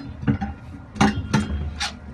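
A few light clicks and knocks, four in two seconds, from hands and a phone being moved about and bumping hard plastic surfaces.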